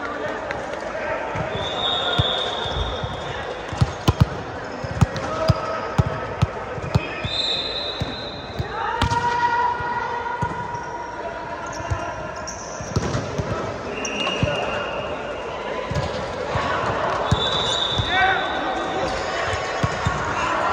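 Indoor volleyball rally on a sports court: sneakers squeaking on the floor in short high squeals, sharp knocks of the ball being hit, and players' voices calling in the background of a large hall.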